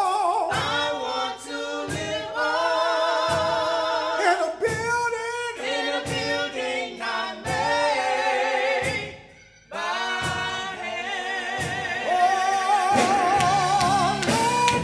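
Gospel song sung by a small group of voices, carried over a microphone, with a steady percussive beat about every second and a quarter. The singing drops away briefly about nine seconds in, then resumes.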